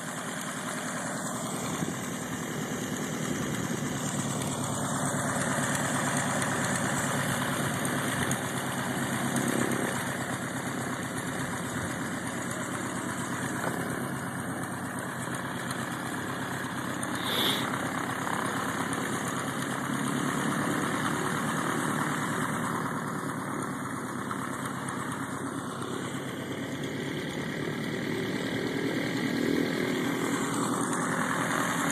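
Piper PA-18-150 Super Cub's four-cylinder Lycoming O-320 engine and propeller running at low power while the tow plane taxis, its level rising and falling slightly. A brief sharp tick cuts through a little past halfway.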